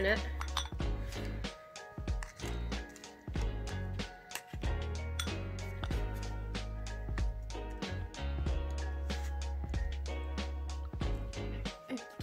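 Upbeat electronic dance music with a steady beat, over the light clinks and scrapes of a metal spoon against a bowl as crumbly bath-bomb powder is scooped into a mould.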